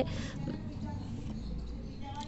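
Faint rustling of fingers working into potting soil in a plastic pot, over low background noise.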